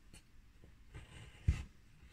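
Craft knife drawn along a ruler's edge, scoring through thin card: a faint scratching, with a sharp click about one and a half seconds in.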